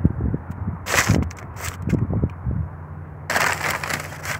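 Footsteps scuffing on dirt and broken cinder block, with a few short scrapes about a second in and a longer rustle near the end.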